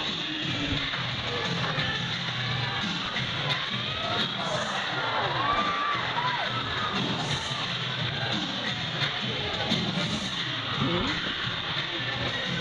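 Background music playing over an audience of spectators, with children shouting and cheering, their voices rising and falling mostly in the middle of the stretch.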